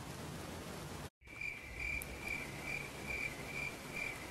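Cricket chirping in a steady, even rhythm of about two to three chirps a second, starting just after a brief dropout about a second in, over faint hiss.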